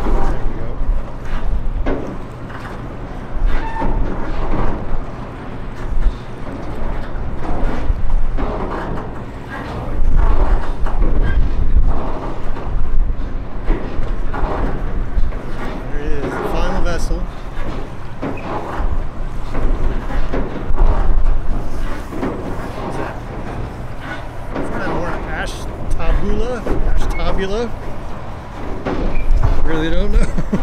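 Steady low drone from the engines of the tug pushing a passing Great Lakes barge, with gusts of wind on the microphone and indistinct voices.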